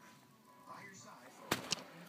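Handling noise from a phone and its charging cable: a sharp click about one and a half seconds in, with faint rustling before it.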